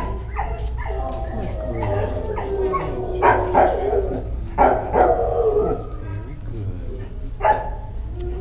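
Dogs in a shelter kennel barking and yelping repeatedly, with whining, sliding calls between the barks, over a steady low hum.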